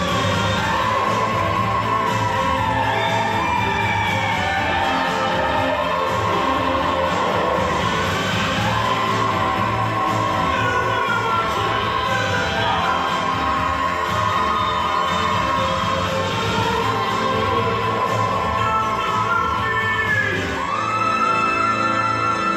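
Soprano singing long, high held notes with slides between them over a stage orchestra, in a live musical-theatre recording, ending on a higher sustained note.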